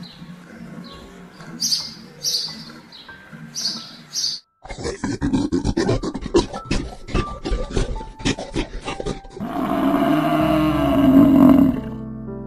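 Sparrows chirping in short high calls, then a stretch of rapid clicks and knocks. Near the end comes the loudest sound, a drawn-out bellowing roar from a bison.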